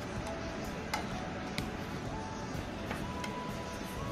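A few light clicks of a metal spoon against a bowl as a child eats, over faint background music of held notes.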